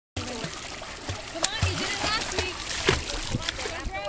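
A child swimming in a pool, splashing with arm strokes and leg kicks, with a few sharper slaps of hands on the water; voices talk in the background.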